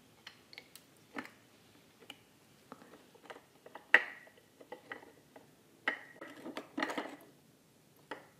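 Scattered soft clicks and taps of oyster shells and lime being handled on a plate, the loudest a sharp clink with a short ring about four seconds in.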